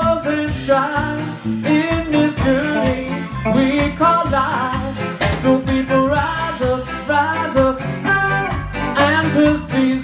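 Live blues band playing: a guitar line with bending notes over a walking bass and a steady drum beat.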